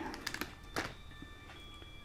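Plastic model-kit parts being handled out of their bag: a few light clicks and rustles, mostly in the first second.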